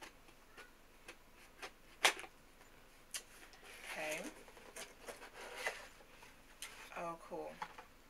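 A box being opened by hand: scattered sharp clicks and crinkles of its packaging, the loudest about two seconds in.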